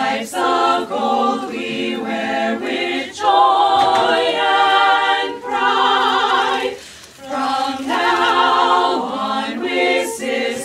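A group of women singing unaccompanied in harmony, holding long notes with vibrato in phrases broken by short breaths, with a brief pause about seven seconds in.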